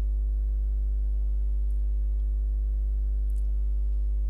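Steady low electrical hum with a ladder of evenly spaced overtones, unchanging throughout, with a faint high-pitched whine above it.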